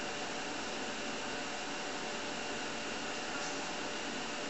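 Steady whir and hiss from a running TRS-80 Model 4P computer during a reset, an even hum with faint steady tones underneath.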